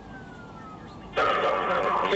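A siren winding down, a faint tone falling slowly in pitch. About a second in, a loud burst of police radio traffic suddenly cuts in.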